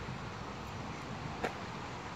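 Steady outdoor background noise, with a single short click about one and a half seconds in.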